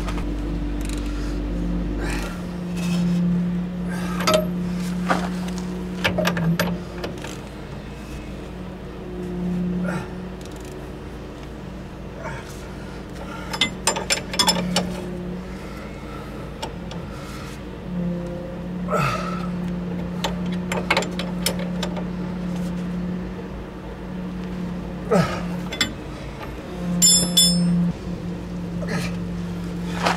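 Scattered metallic clinks and knocks of hand tools and fasteners being worked at a car's front suspension and wheel hub, coming in small clusters with a brief jangle of metal near the end. A steady low hum runs underneath.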